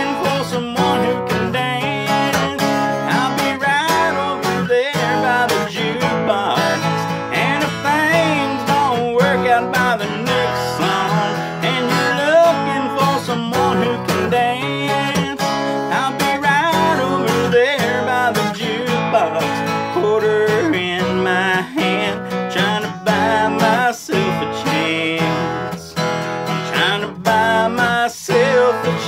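Solo acoustic guitar strummed steadily through an instrumental break in a country dance tune.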